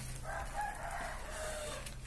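A rooster crowing once, a single call lasting about a second and a half.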